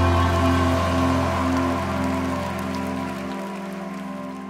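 A live worship band's closing chord held and slowly fading out, with no singing and a faint wash of noise beneath it. The low bass note drops out a little over three seconds in.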